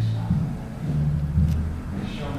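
Muffled, indistinct murmur of low-pitched voices in a crowded room, with a single brief click about one and a half seconds in.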